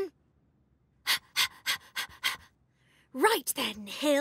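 A cartoon character panting: about six quick, breathy pants, four or five a second, then a short wordless vocal exclamation with a gliding pitch near the end.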